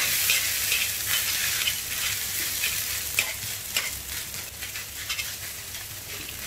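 Egg-yolk-coated rice frying in a wok with a steady sizzle. A metal spatula repeatedly scrapes and turns the rice against the pan as it is stir-fried so the grains separate.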